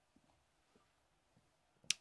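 Near silence, then a short, sharp intake of breath through the nose just before the end.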